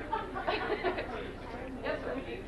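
Indistinct chatter: people talking among themselves in a room, no single clear speaker.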